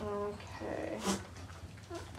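Boer goat doe making short, low maternal calls to her newborn kids: a brief steady call at the start, then a rougher, rumbling one just over half a second in.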